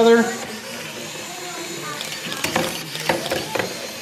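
Mini sumo robots' small geared drive motors running as they move on the ring. From about two seconds in there is a run of sharp clicks and knocks as the two robots meet and shove against each other.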